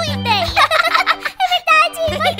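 A rapid, high-pitched gabbling voice, like sped-up unintelligible speech, over background music with a steady low bass note.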